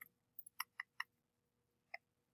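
Faint, sharp clicks, about six of them at uneven intervals, from a computer mouse being clicked while burn-tool strokes are made in Photoshop.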